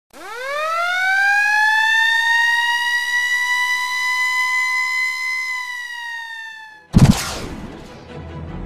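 A siren-like sound effect: one wailing tone that rises quickly in pitch within the first second, holds steady, sags slightly and stops abruptly about seven seconds in. A sudden loud hit follows and fades out.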